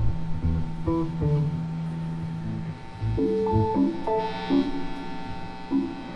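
Electric guitar and electric bass playing loose, scattered single notes through their amps, with a low held note that stops about halfway. They are noodling rather than playing a song.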